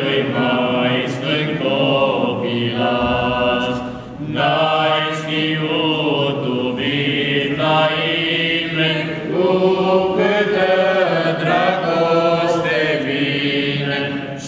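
A small group of men's voices singing a Romanian Christmas carol (colindă) a cappella from the church lectern, in long held phrases; the singing breaks briefly about four seconds in, then goes on.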